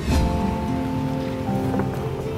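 A brief whooshing transition effect at the start, followed by background music holding steady chords.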